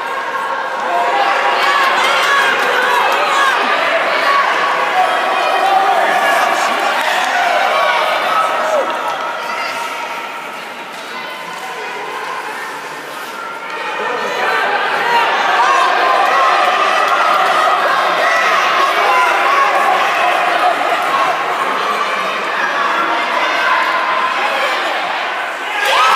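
Spectators at a youth ice hockey game calling out and chattering, many voices overlapping in a reverberant arena, easing off briefly midway, with occasional bangs off the boards.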